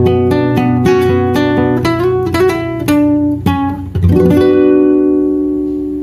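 Acoustic guitar playing the closing bars of a song: picked notes and strummed chords, ending on a final chord about four seconds in that rings on and slowly fades.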